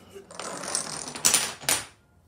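A chain of wooden Jenga blocks toppling one after another on a hardwood floor: a rapid clatter of many small knocks lasting about a second and a half, with a few louder knocks near the end.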